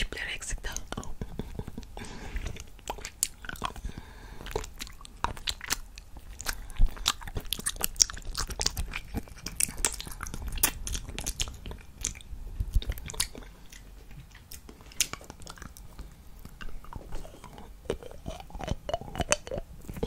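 Close-miked wet mouth sounds of licking and sucking on a hard candy cane: irregular lip smacks and sticky clicks, with no steady rhythm.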